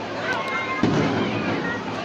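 A single firework burst about a second in: a sudden boom that rolls off over the next second. Voices of people below carry on underneath it.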